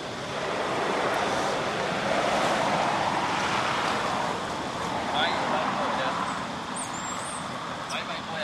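Large aircraft passing overhead: a broad rushing noise that swells about a second in, is loudest around the middle, and fades toward the end.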